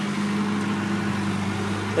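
Backhoe loader's diesel engine running steadily at an even, unchanging pitch.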